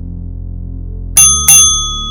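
Two quick, bright bell dings about a third of a second apart, ringing on briefly over steady background music. This is an interval-timer chime marking the start of the next 45-second exercise.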